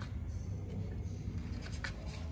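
Light scratching and rustling of paws shifting on a cardboard floor, with a sharper scratch near the end, over a steady low rumble.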